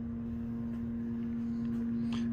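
Steady background hum holding one constant tone, with a faint low rumble beneath it.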